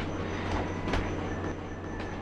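Steady background noise with a low hum and a faint thin high tone, with two faint ticks.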